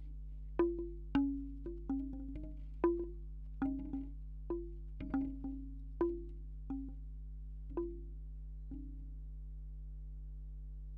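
Bamboo wind chime's tubes knocking together irregularly, picked up close by contact microphones: each hollow wooden clack rings briefly at a low pitch, one or two a second, thinning out near the end. A steady low hum runs underneath.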